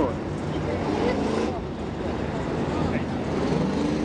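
Several WISSOTA Street Stock race car engines running at low speed on a dirt oval, their pitch rising and falling as the field rolls in single file for a restart, with faint voices in the background.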